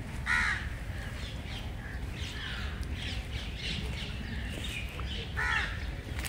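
Birds calling: two loud calls, one just after the start and one near the end, with fainter calls between them over a steady low rumble.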